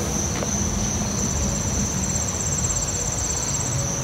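Crickets singing: a steady high-pitched chorus, joined about a second in by a second, rapidly pulsing trill that stops near the end, over a low background rumble.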